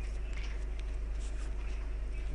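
Steady low hum with faint background hiss, and a few faint ticks.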